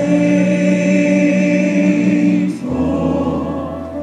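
Southern gospel male vocal quartet singing a long held chord together, moving to a new chord about two-thirds of the way through.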